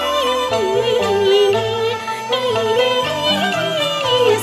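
Cantonese opera (yuequ) music: a wavering, ornamented lead melody with vibrato over a traditional Chinese ensemble accompaniment.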